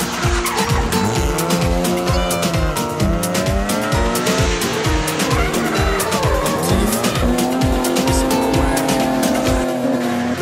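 Rally car engines revving up and down with tyre squeal as the cars slide through a hairpin, under music with a fast, steady thumping beat that stops near the end.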